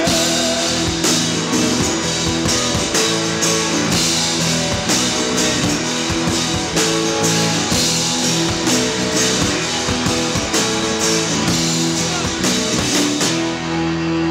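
Live rock band playing an instrumental passage with no vocals: strummed acoustic guitars, electric guitar and electric bass over a drum kit with steady cymbal and drum hits.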